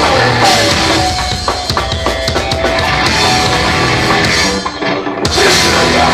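Hardcore punk band playing live: distorted electric guitars, bass and a drum kit at full volume. The band stops for a moment about five seconds in, then comes back in.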